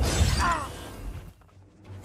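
Movie battle sound effects of smashing, breaking debris over a low rumble, with film score underneath. The sound drops suddenly to a brief hush about a second and a half in.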